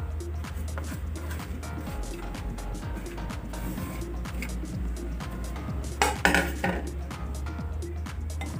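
Small clinks and taps of a plate and a glass mixing bowl being handled while salt and pepper are sprinkled in, with a louder clatter about six seconds in, over soft background music.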